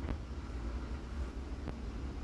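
Spinach pakoras deep-frying in hot oil in an aluminium kadai: a steady sizzle over a low hum, with two light clicks, one at the start and one near the end.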